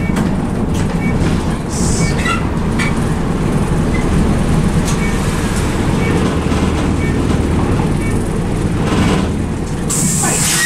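Bus engine and road noise heard from inside the passenger cabin while the bus drives along, a steady low rumble with occasional light rattles from the interior.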